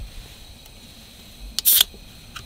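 A Coca-Cola aluminium can being pulled open: a small click of the tab, then a short sharp hiss of escaping carbonation near the end.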